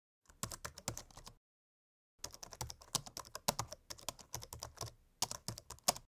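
Computer keyboard typing: a short run of quick key clicks, a pause of under a second, then a longer run of clicks.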